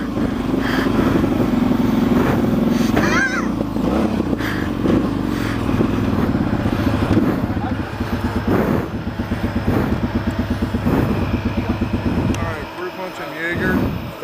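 A vehicle's engine running as it drives slowly over rough grass, its low note rising and falling with the throttle and dropping away shortly before the end. Laughter at the start.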